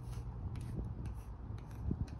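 A pointed tool scratching letters into a concrete wall in a run of short scraping strokes, with a few faint ticks as the point catches the rough surface.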